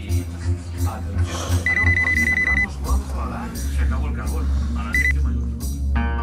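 Electronic alarm ringing: a high trilling tone in bursts about a second long, repeating, the last one cut short about five seconds in.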